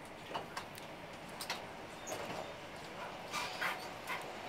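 Running noise inside a moving train carriage, with a run of short, high squeaks and knocks over it, loudest near the end.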